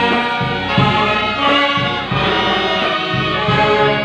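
Brass band playing a medley, trumpets, trombones and low brass sounding together in full held chords that shift several times.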